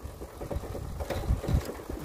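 Motor scooter coasting with its engine off: tyres rolling over a rough dirt road, with an uneven low rumble and a few small knocks and rattles.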